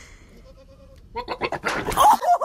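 A goat bleats loudly, starting a little over a second in.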